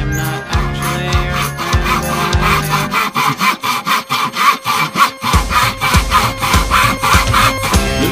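Handsaw cutting through the thin wooden roof of a birdhouse in quick, even back-and-forth strokes, heard under a pop song with a band.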